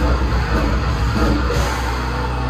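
Old-school death metal band playing live: distorted electric guitars, bass and drum kit, loud and dense without a break, heard from within the crowd in a small club.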